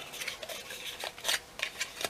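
Cardstock rubbing and crinkling between fingers as a taped corner of a small card box is pressed together: a few short, crisp scrapes spread through the moment.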